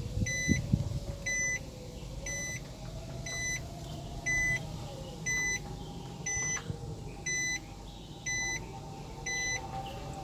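A car's in-cabin warning chime beeping steadily, about once a second, over the low hum of the running car.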